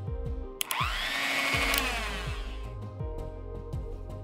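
Electric mixer grinder grinding cooked green peas in its stainless-steel jar: the motor whine rises as it spins up about half a second in, runs for just over a second, then cuts off sharply and winds down. Background music plays throughout.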